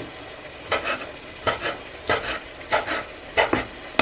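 Kitchen knife cutting cooked beef lung into small cubes on a wooden cutting board: about six separate strokes of the blade against the board, spaced a little under a second apart.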